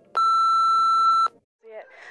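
Answering machine beep: a single steady tone lasting about a second, cutting off sharply, which signals the start of recording.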